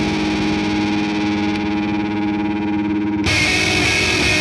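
Electric guitar, a Squier Jazzmaster with Fender CuNiFe Wide Range humbuckers, played with distortion and effects on the neck pickup in sustained, ringing notes. About three seconds in, the sound cuts abruptly to the middle pickup position, with a brighter tone.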